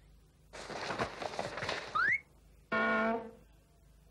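Cartoon sound effects: about a second and a half of rattling, clattering noise, a quick rising whistle, then a short steady horn-like note.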